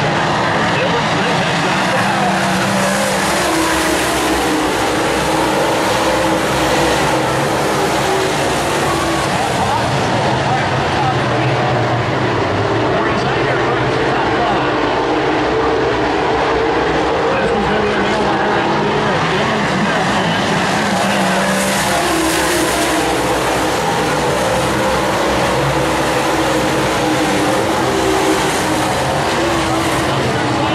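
A pack of dirt Super Late Model race cars at racing speed around the oval, their V8 engines running loud and continuous. The engine pitch rises and falls as the cars go down the straights and through the turns.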